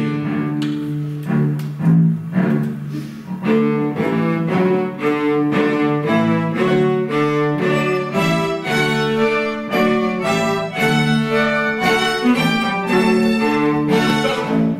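A bowed string ensemble of violins, cellos and a double bass playing a piece together, sustained notes changing in a steady rhythm.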